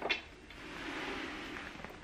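Hands handling a wooden activity cube: one light knock right at the start, then a soft, even rustling for about a second and a half.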